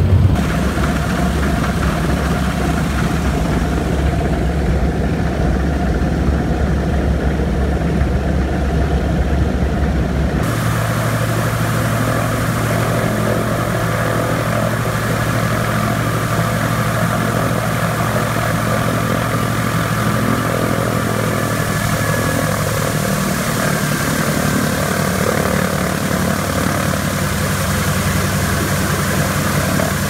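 The twin Pratt & Whitney R-1830 radial engines of a PBY-6A Catalina flying boat running steadily on a ground run, with the port engine on its first run with a new carburettor. About ten seconds in, the sound changes abruptly from a deep, muffled drone inside the cockpit to a fuller, brighter engine sound heard outside the aircraft.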